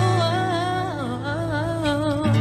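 Young male voice singing a pop ballad live, holding a wavering line that slides between notes, over steady acoustic guitar chords.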